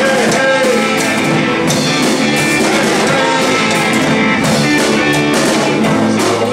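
A rock band playing an instrumental passage at a steady loud level: electric guitars and bass guitar over a drum kit, with no singing.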